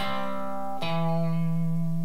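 Stratocaster-style electric guitar playing a seesawing thirds riff over a C chord: two-note double stops barred at the fifth fret, one struck at the start and another a little under a second in, each left ringing.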